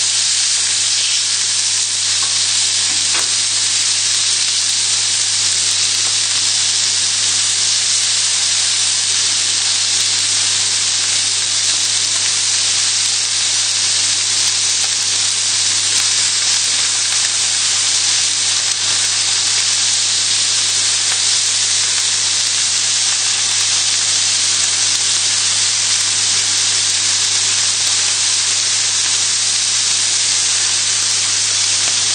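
Thin beef steaks searing in a very hot frying pan: a loud, steady sizzle that keeps up without a break.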